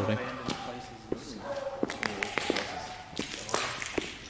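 Footsteps on a gritty, debris-strewn concrete floor, heard as irregular scuffs and taps.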